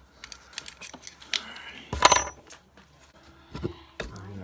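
Metal clicking and rattling as the twist bit is worked loose and pulled from an electric drill's chuck, with one loud metallic clink that rings briefly about two seconds in.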